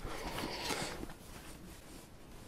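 Faint rustling and handling noise on a clip-on microphone as its wearer moves in his jacket and helmet, dying away towards the end.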